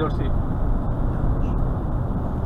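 Steady engine and road rumble heard inside a lorry's cab while it drives at motorway speed.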